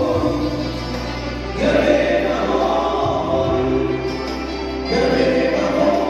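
Group singing in a choir style over instrumental accompaniment with sustained low notes, each new sung phrase swelling in about every three seconds.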